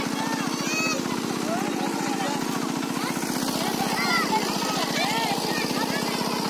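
A small engine running steadily with an even, rapid chug, with people's voices calling over it.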